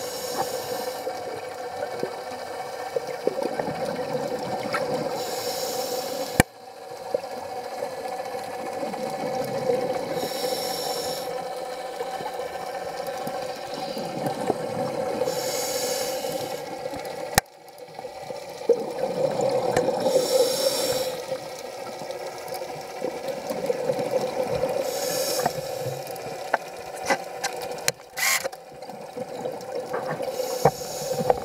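Scuba diver breathing through a regulator underwater: a burst of exhaled bubbles about every five seconds, over a steady hum.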